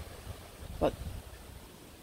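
A pause in conversation: one short spoken word just under a second in, over a faint low rumble.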